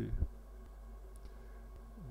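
Low steady hum of room tone with two or three faint, sharp clicks near the middle, after the last spoken word trails off.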